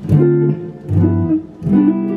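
Electric guitar, a Telecaster-style solid body, playing three chords in turn, each struck once and left to ring, with the last still sounding at the end. They are the jazz ii–V–I voicings of the lesson: D minor 7, G13, C major 7.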